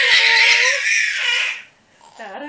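A baby laughing loudly and excitedly for about a second and a half, then stopping.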